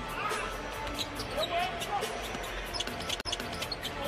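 Broadcast sound of a live basketball game: a basketball bouncing on the hardwood court amid the arena's background noise and music. The sound breaks off suddenly for an instant about three seconds in, at an edit cut.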